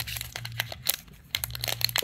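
Foil Pokémon TCG booster pack wrapper being peeled open by hand, crinkling and crackling in quick irregular snaps.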